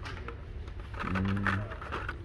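A man's held wordless "ehh" or hum about a second in, over a steady low store background hum, with a few faint clicks from plastic blister-packed toy cars being handled on the pegs.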